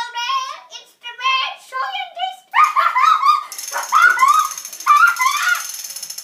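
Children's high-pitched voices in short excited calls and vocalizing, without clear words.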